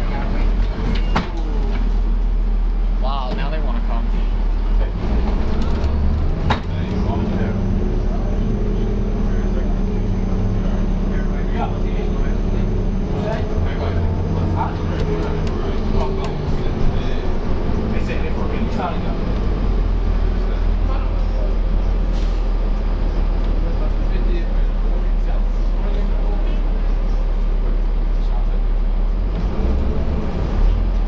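Cabin sound of a New Flyer D40LF city bus under way, its Cummins ISL diesel engine running over a steady low rumble, with the engine note rising and falling through the middle as the bus pulls and the Allison automatic transmission shifts, and occasional short rattles and knocks.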